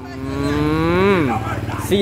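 An animal's long drawn-out call, rising steadily in pitch and then dropping away just over a second in.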